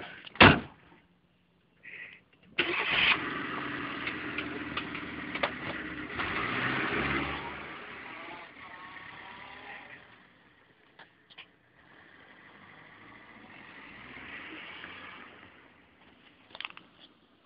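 A car engine starts suddenly about two and a half seconds in and runs, fading away by about ten seconds. A fainter engine sound swells and dies again near the end.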